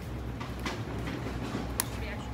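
Steady low rumble of construction-site and city background noise, with a few faint clicks and one sharp tick near the end.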